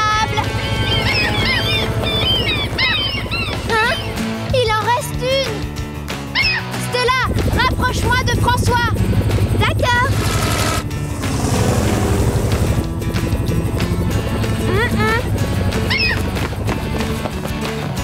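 Cartoon soundtrack of background music over a steady helicopter hum, with many short squawking seagull calls that rise and fall in pitch. The calls are thickest in the first seven seconds and come back briefly around fifteen seconds.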